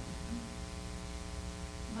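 Steady electrical mains hum in the sound system, a constant buzzing drone made of many even tones, over quiet room tone.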